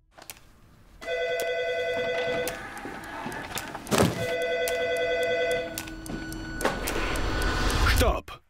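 Office telephone ringing twice, each ring about a second and a half long, with a loud thud between the rings. Near the end a low rumble swells up as binders and files are swept off a desk.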